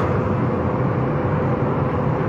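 Steady road and engine noise inside a moving car's cabin, a continuous low rumble with a faint steady hum.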